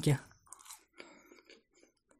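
A woman chewing a bite of baursak, sugar-dusted fried dough, heard as faint, short mouth clicks spaced irregularly, right after her speech trails off at the start.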